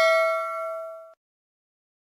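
Bell 'ding' sound effect of a subscribe-button animation, as the cursor clicks the notification bell. A single clear ringing tone fades and cuts off about a second in.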